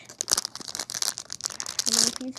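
Foil blind-bag packet crinkling and tearing as fingers pull it open, a fast run of sharp crackles.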